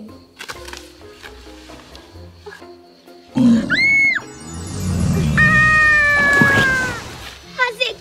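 Soft background music, then a sudden sound effect about three and a half seconds in: a brief high whistle. It is followed by a loud, low, growling roar of about two and a half seconds with a slowly falling tone over it, a lion-roar effect.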